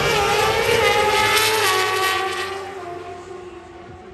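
Pro Stock Motorcycle drag bikes at full throttle, accelerating down the drag strip. Their engine note climbs in pitch and drops back at each gearshift, then fades as the bikes pull away.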